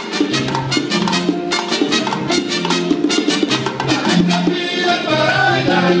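A live Cuban son montuno conjunto playing, with bongos, congas and bass driving a steady rhythm. Trumpets play with the band, and a melody line comes in over the last second or two.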